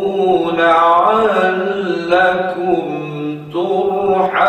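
A man's solo voice reciting the Quran in the Jiharkah tarannum mode, drawing out long melodic notes with slow ornamented turns. Near the end the pitch drops lower, then rises again.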